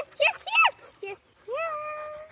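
A child calling a dog in a high voice: "here, here!". The last call is drawn out and held.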